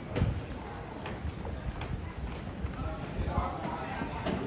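Footsteps of people walking along a carpeted corridor, an uneven run of dull thuds about two a second, the loudest just after the start, with voices in the background.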